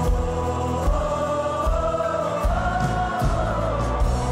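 Church choir singing a long held phrase without clear words that rises in pitch about a second in and eases back near the end, over gospel instrumental accompaniment with a steady low beat.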